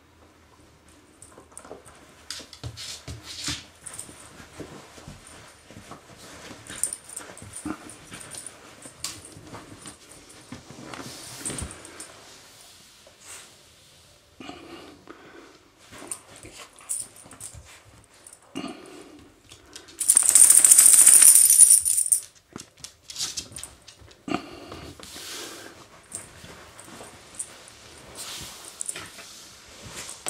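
A small dog moving about in a soft fabric pet house: scattered rustles and scuffs, and a loud, harsh rushing noise lasting about two seconds just past the middle.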